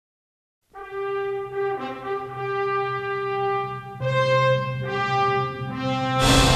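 Brass fanfare of a few long held notes that change pitch several times, starting after a brief silence.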